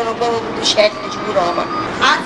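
A woman's voice making a speech into a handheld microphone.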